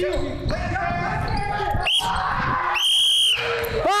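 Basketball being dribbled on a hardwood gym floor amid players' voices in a large, echoing hall, then a referee's whistle blown once, one sharp blast of about half a second near the end, calling a foul.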